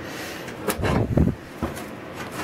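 A sharp click, then a short low clunk about a second in, and another click after it: handling knocks of the kind made by moving or bumping metal parts.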